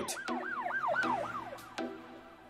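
A siren-like whooping tone that rises and falls about four times a second and fades away over a second and a half, over soft background music with a plucked note near the end.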